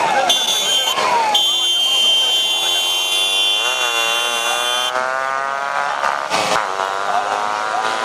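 A steady, high-pitched buzzing tone that breaks off twice in the first second or so and stops about five seconds in, over a man's voice calling out in long, drawn-out phrases during a bullock cart race.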